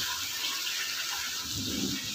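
Tomato pieces and spice paste sizzling in hot oil in a pan, a steady hiss.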